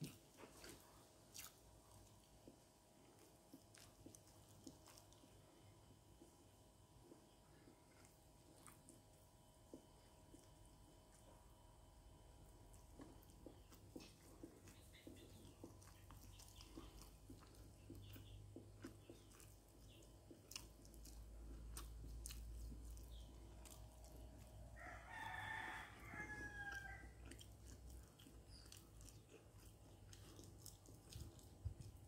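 Near silence with faint scattered clicks. About 25 seconds in, a rooster crows once, faintly and briefly.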